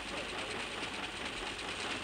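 Computer line printer running, a steady, fast mechanical chatter.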